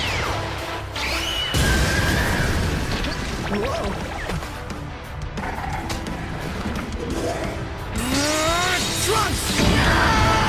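Animated fight-scene soundtrack: music mixed with crashing impact and blast sound effects, with a shout near the end.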